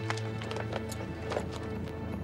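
Background music of sustained held tones, with a scattering of short, irregular light knocks or clicks over it.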